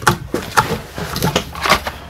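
Paper and cardboard packaging being handled: irregular rustles and light knocks as a printed manual is set down and a small cardboard box is picked up.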